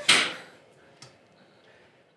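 A single short cough right at the start, fading within half a second, then quiet room tone with one faint click about a second in.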